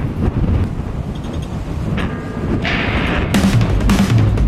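Wind buffeting the microphone, a dense low rumble. Music comes in over it from about two seconds in, with beats starting near the end.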